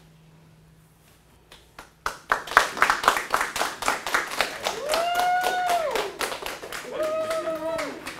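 A small group of people clapping, starting about two seconds in, with two long drawn-out cheers from voices over the applause.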